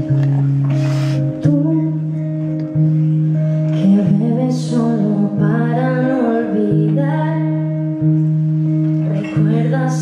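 Live solo performance: guitar playing long held chords that restart in a steady pulse about every second and a half, and a woman's voice singing over them from about four seconds in.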